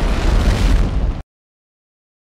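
Explosion sound effect: a dense rushing blast over a deep rumble, cutting off suddenly a little over a second in.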